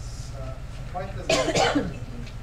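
A single loud cough, about a second and a half in, over faint talking in the room.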